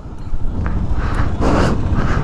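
Single-cylinder engine of a Kawasaki KLR650 running as the bike moves along a dirt track, heard mostly as a steady low rumble mixed with wind on the microphone. It grows louder about half a second in.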